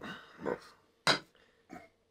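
Aluminium beer can set down on a wooden coaster: one short sharp knock about a second in, followed by a fainter knock.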